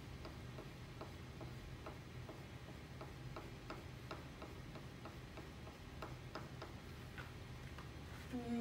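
Crayon tapped and stroked in quick short strokes on paper against a whiteboard: a run of faint ticks and scratches, a few a second, over a low steady hum.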